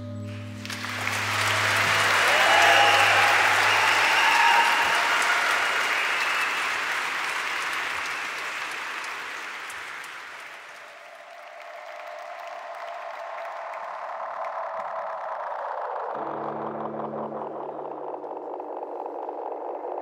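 Concert audience applauding after a song, as the orchestra's last low chord dies away; the applause swells about a second in and fades out about halfway through. Near the end, low sustained keyboard tones start the next piece.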